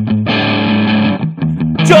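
Rock song on guitar and bass between sung lines: a held guitar chord, then a few short chopped chords, and the singer coming back in at the very end.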